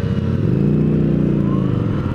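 Yamaha FZ-09's three-cylinder engine accelerating under throttle, its pitch climbing for about half a second and then holding steady as the bike pulls away.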